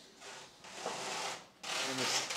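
Front tyre of a stationary kit car scrubbing on the garage floor as the steering is turned from lock to lock: two long rubs with a short break about one and a half seconds in.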